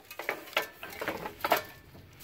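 Shovels and other hand tools with metal blades and wooden handles knocking and clinking as they are gathered up and put away: a handful of separate knocks, the loudest about one and a half seconds in.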